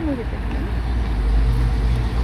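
Steady low rumble of car traffic on a town street, with a short vocal sound at the very start.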